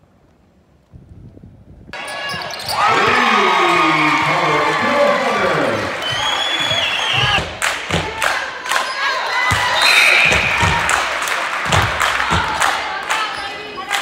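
Gym noise with crowd voices, then a basketball bouncing repeatedly on a hardwood court from about halfway through.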